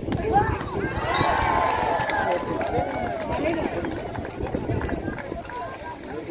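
Many voices of spectators and players shouting and cheering at once over a volleyball rally. The shouting is loudest in the first two or three seconds and dies down toward the end.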